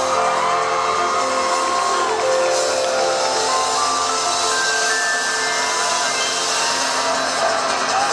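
Live pop band playing through the stage PA, an instrumental stretch of electric guitars, drums and keyboard with steady held notes.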